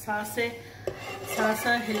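A spoon knocks and scrapes against a nonstick saucepan as milk is stirred on the stove, with a sharp knock about a second in and quicker clicks in the second half.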